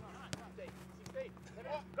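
A football kicked sharply between players, one crisp strike about a third of a second in, under faint players' voices calling across the pitch and a steady low hum.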